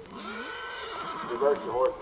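A horse whinnying: a long high call that breaks into a louder, wavering whinny near the end.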